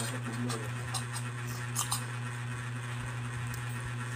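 Metal fork and spoon tapping and scraping on a plate of noodles, with a close pair of sharp clicks near the middle, over close-up eating noises and a steady low hum.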